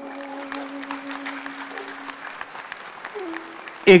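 Audience applause, a patter of many claps, under soft stage music: one held note that moves to a higher note about three seconds in.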